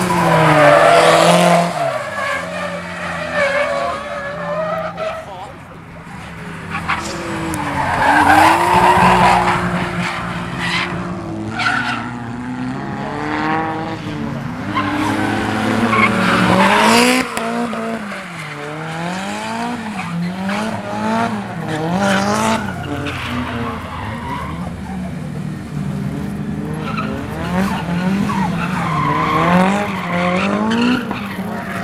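Drift cars at full throttle, engines revving up and down again and again as the drivers work the throttle through a slide, with tyre squeal swelling loudest about a second in, near the middle and again around halfway.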